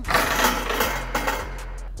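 One-man metal-framed blocking sled rattling and scraping across artificial turf as a linebacker drives into it. The noisy burst starts suddenly and dies away over about a second and a half.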